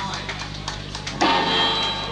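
Live rock band on stage between numbers: a few scattered drum hits amid room noise, then a little past halfway a steady held tone comes in through the amplification.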